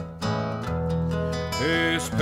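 Nylon-string classical guitar with strummed chords, the notes ringing on between strokes.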